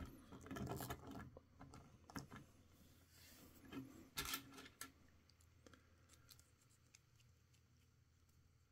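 Faint handling of a plastic action figure: a few small clicks and some rubbing over the first five seconds, then near silence.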